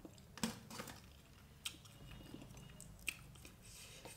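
Faint chewing of a mouthful of soft rice and vegetables, with a few short, sharp mouth clicks spread through it.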